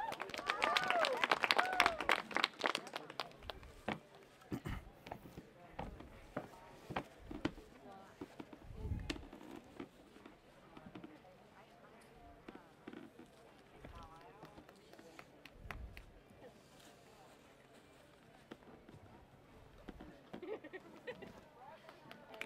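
Audience voices and a burst of short claps in the first few seconds, then a quieter stretch of scattered knocks and a few low thumps, with faint voices here and there.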